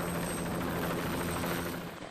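A light single-turbine helicopter of the Bell 206 kind hovering: steady rotor and engine noise with a thin, high turbine whine, dropping a little just before the end.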